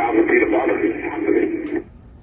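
Air-traffic-control radio transmission: a voice over a narrow, noisy VHF radio channel, too garbled to make out, cutting off just before the end.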